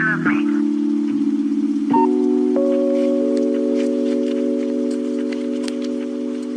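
Lofi hip-hop instrumental: soft sustained keyboard chords that change about two seconds in, with new notes added just after, and a faint scattering of light ticks over them.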